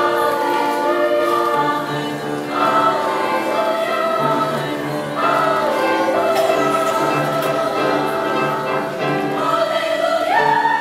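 Youth choir singing in parts, holding long sustained chords that move to new notes every few seconds.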